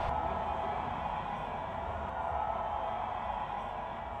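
Faint steady noise with a low rumble: the background ambience of a live concert recording once the band's music has faded out.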